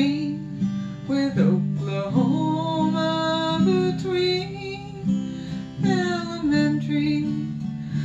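Acoustic guitar strummed steadily, with a woman singing long, drawn-out notes over it.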